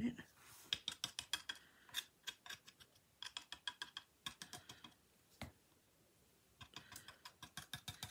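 A stick scraping and tapping in a small jar of chalk paste and dabbing the paste onto a silkscreen: a run of quick small clicks and scrapes, with a pause of about a second about two-thirds through.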